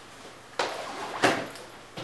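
Plastic DVD cases being packed into a fabric backpack: the cases knock and slide against each other and the bag rustles, in two louder bursts, one about half a second in and one just past a second.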